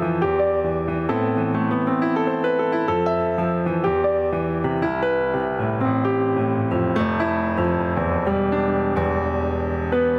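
Solo piano piece played on a digital keyboard: slow, sustained chords over a held bass note that changes every couple of seconds, with higher melody notes moving above.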